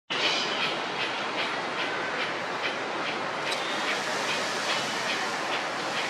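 A bird repeating a short, high chirp about two or three times a second, evenly spaced, over steady background noise.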